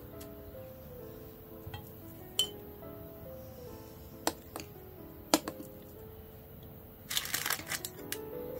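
Soft background music with a slow melody of held notes, over a few sharp clinks of kitchenware against a metal baking tray. Near the end comes a short crinkling rustle of baking paper.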